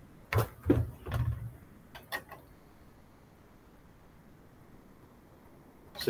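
A quick run of about five knocks and clatters in the first two and a half seconds, then quiet room tone.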